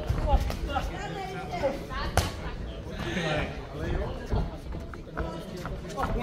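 Boxing gloves landing punches in the ring: several sharp smacks, the loudest about two seconds in, over people's voices shouting in the hall.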